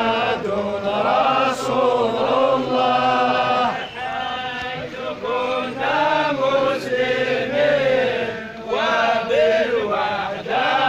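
A large crowd of men chanting together in unison, a religious chant for a funeral, going in repeated phrases with brief breaks between them.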